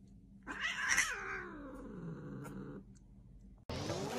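A cat's long, drawn-out call of about two seconds, its pitch rising and then sliding down, as one cat paws at another's face. Music begins suddenly near the end.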